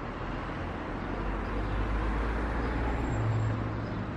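Outdoor background noise: a steady low rumble that swells slightly through the middle.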